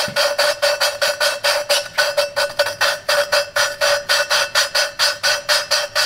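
Valve being lapped into its seat in an aluminium LS 243 cylinder head: lapping compound grinding between valve face and seat as the valve is spun rapidly back and forth with a suction-cup lapping stick. About five gritty strokes a second over a steady ringing note, whose tone is the guide to the seat lapping in.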